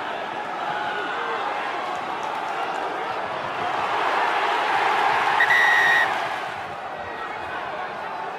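Stadium crowd noise swelling as a tackle goes in, then a single short blast of the referee's whistle about five and a half seconds in, after which the crowd quietens.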